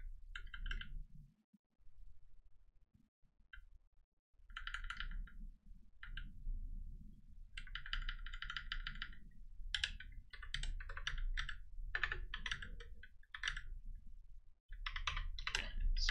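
Typing on a computer keyboard in bursts of quick keystrokes, with a pause of a few seconds soon after the start and scattered single key presses near the end.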